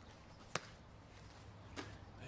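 Mostly quiet, with one sharp tap about half a second in and a fainter one near the end.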